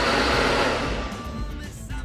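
Countertop blender running, blending pineapple, mint leaves and coconut water into juice; the motor noise fades away toward the end, with background music underneath.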